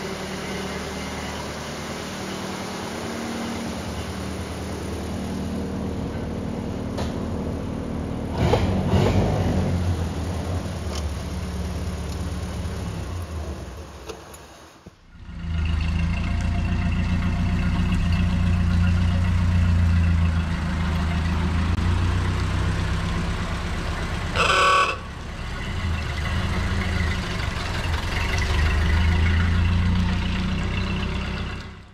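1929 Ford Model A four-cylinder engine running steadily. After an abrupt break about halfway through, it runs louder as the car drives off, with one short honk of its horn near the end.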